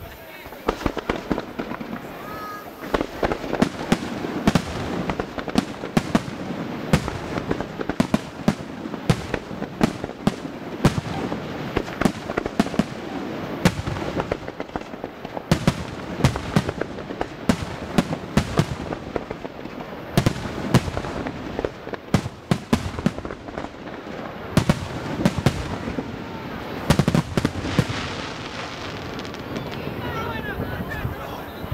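Aerial fireworks display: a rapid barrage of shell bursts, sharp bangs several a second over a continuous rumble of overlapping reports, building up about three seconds in.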